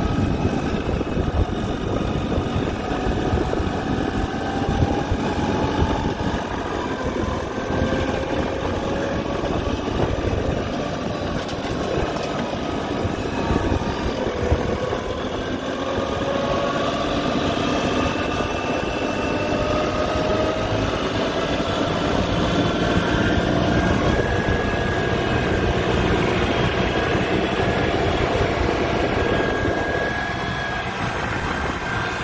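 New Holland Boomer 55 compact tractor's diesel engine running as the tractor drives along the road. Its pitch climbs in two long rises as it picks up speed, then holds steady.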